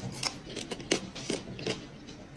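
A man chewing a mouthful of kanzo, the crispy scorched bottom layer of jollof rice: a handful of faint, short crunching clicks about every third of a second.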